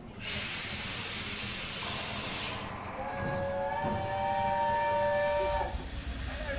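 Hogwarts Express locomotive letting off a loud burst of steam hiss for about two and a half seconds, then sounding a chord steam whistle of several notes held for about three seconds before it cuts off.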